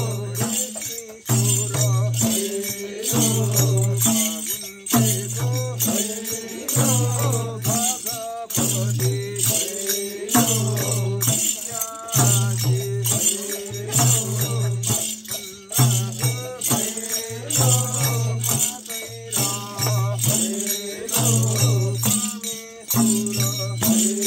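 Madal hand drum played in a steady repeating beat, with a group of voices singing a festival song over it and light metallic jingling.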